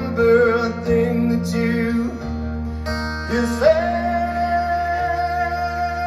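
Male vocalist singing live with his own acoustic guitar accompaniment. After a short sung phrase, his voice slides up about halfway through into a long, high held note over the sustained guitar.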